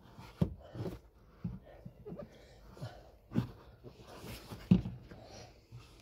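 Short, heavy breaths and grunts of effort, mixed with a few light knocks and clicks as the replacement accelerator pedal assembly is pushed about and lined up on its mounting studs. The loudest knock comes a little under five seconds in.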